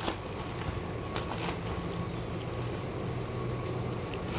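Steady low hum of an idling vehicle engine, even throughout.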